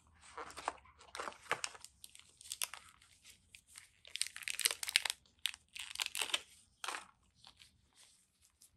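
Thin plastic wrapping crinkling around a USB charging cable as gloved hands pull the cable out of it, in irregular bursts that are loudest past the middle.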